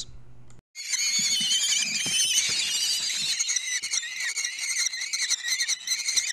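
A brood of common kestrel nestlings begging all at once while the female shares out prey: a shrill, wavering ruckus of many overlapping calls that starts abruptly about a second in.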